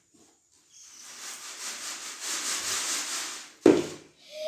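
Sand and gravel being shaken back and forth in a wooden-framed sieve: a steady grating rasp of grit rubbing over the screen that swells and fades, then one sharp knock near the end.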